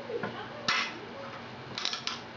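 Metal bar clamp with a wooden handle being slid into place and set on a wooden jig, giving sharp metallic clinks about two-thirds of a second in and again near the end.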